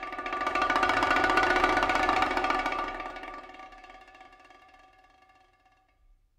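Rapid stick roll on several small tuned drumheads, swelling to a loud peak in the first two seconds and then fading away to almost nothing.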